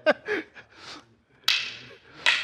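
A single sharp smack about one and a half seconds in, from a strike during stick-fighting drill practice. A short laugh trails off at the start.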